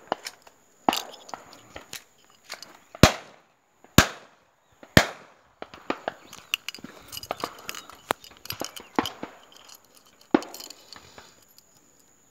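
Shotgun shots: three sharp reports about a second apart near the middle, with several fainter shots and pops before and after.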